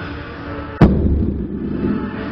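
A 27.5 kg dumbbell dropped onto rubber gym flooring: one loud thud a little under a second in, with a low ringing tail that dies away over about a second.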